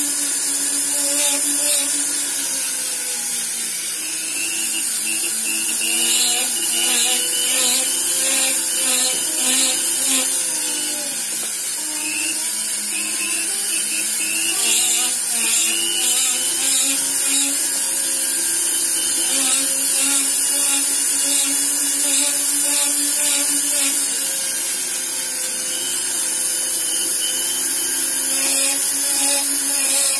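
Handheld rotary-tool burr carving a silver ring: a steady, high motor whine with a grinding hiss as the bit cuts the metal. The pitch dips briefly about midway and then climbs back.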